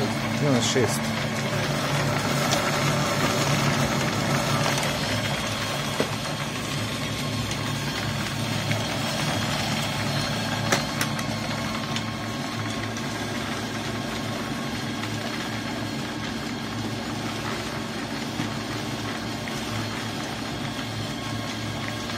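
Small coal-dust pellet press running steadily with an even, low machine hum and a couple of faint knocks.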